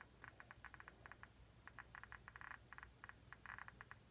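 Geiger counter clicking faintly and irregularly, several clicks a second in random clusters, as its probe counts radiation from an americium-241 smoke detector source.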